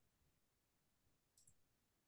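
Near silence: faint room hiss, with one very faint short high click about one and a half seconds in.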